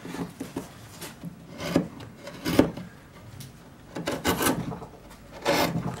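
Swiss-made Pfeil carving gouges cutting into linden wood by hand pressure. There are about five short scraping cuts and slices, each ending as a chip breaks away.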